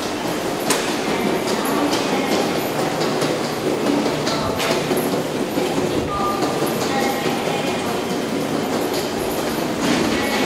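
Steady, loud echoing din of an underground pedestrian passage, with irregular footstep clicks on the tiled floor.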